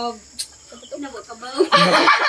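A rooster crowing loudly and raspily, starting near the end, after a stretch of faint voices and a single sharp click.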